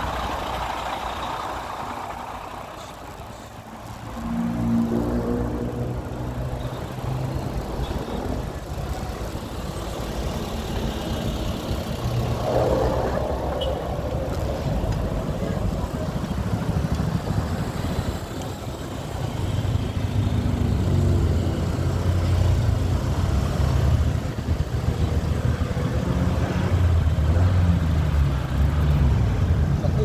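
Road traffic at close range: the engines of nearby cars, vans and a motorcycle running, a low hum that swells and fades as vehicles pass.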